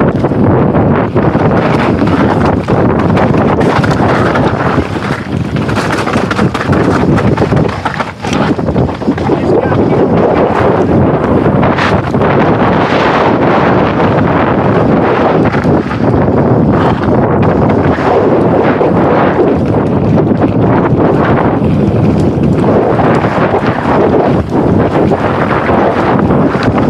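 Heavy wind buffeting on a moving camera's microphone, mixed with a rough rumble and scattered knocks and rattles from travelling fast over a dirt trail.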